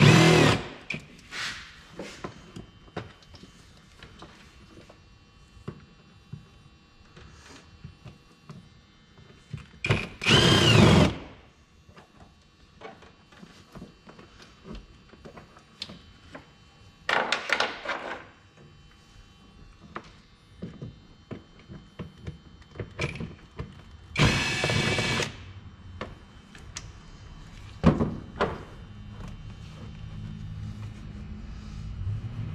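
Cordless drill with a long socket extension spinning out 10 mm bolts in several short runs, each about a second long and several seconds apart. Short clicks and knocks of tools and parts come between the runs.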